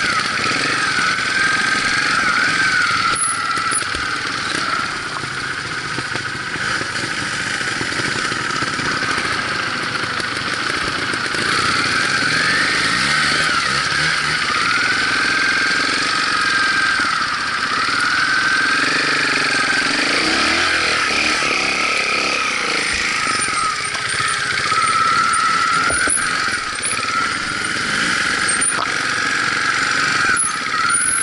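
Trials motorcycle engines running at low speed on a rough, steep trail, the engine note rising and falling every second or two as the throttle is worked.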